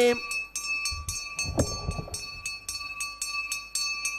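A hand bell rung steadily and fast, about four to five strokes a second, its ringing tones held between strokes.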